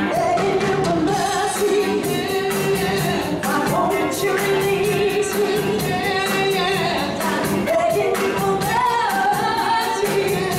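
Live band playing beach music with a lead vocalist singing over a steady drum beat.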